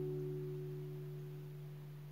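Last chord of a nylon-string classical guitar ringing out and fading away, the lowest note lingering after the higher ones die.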